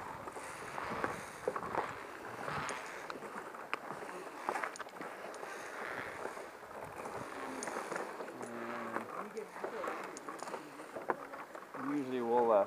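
Footsteps on the planks and steps of a cable suspension bridge, with scattered clicks and knocks throughout. Faint voices come in briefly about three quarters of the way through.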